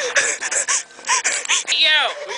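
Young people's voices crying out in short high yelps and whimpers with breathy hisses between them, ending in a shriek that slides down in pitch.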